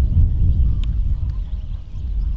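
A steady low rumble of wind on the microphone, with a faint click about a second in. Under it are soft hoofbeats of a horse trotting on a sand arena.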